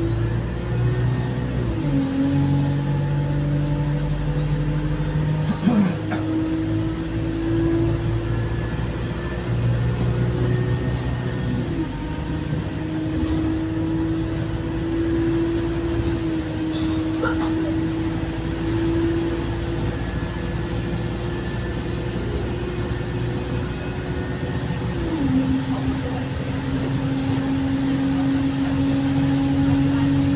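Alexander Dennis Enviro200 single-deck bus heard from inside the saloon while driving. Its engine note climbs slowly and drops back at each automatic gear change: about two seconds in, around twelve seconds, and near twenty-five seconds.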